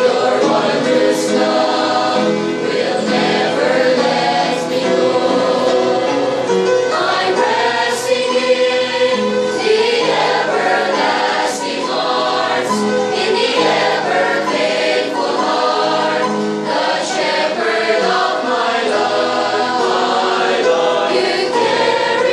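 Mixed church choir of young men and women singing together in parts, holding long chords with clear sung consonants throughout.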